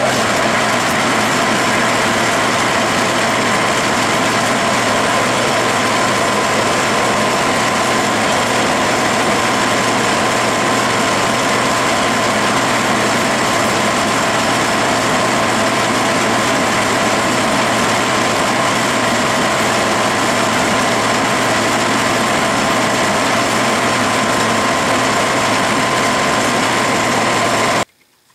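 Metal lathe running steadily at slow speed under power feed, a constant machine hum with a clear steady tone through it. It starts abruptly and cuts off suddenly at the end.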